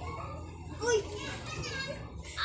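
Children's voices in the background, with a short, loud, high-pitched call about a second in and more high child-like voices near the end, over a steady low hum.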